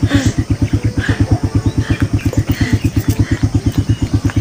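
A small engine running steadily with a fast, even low putter of about eight to nine beats a second.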